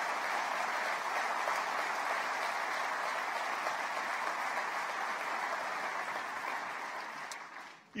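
Audience applauding steadily, dying away just before the end.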